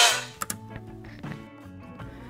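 Music playing through the Lenovo IdeaPad D330 laptop's built-in speakers, picked up close to the speakers at first. It drops sharply just after the start and carries on much fainter.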